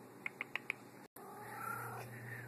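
Domestic cat giving four quick, short chirps within about half a second. A faint low hum follows after a brief dropout.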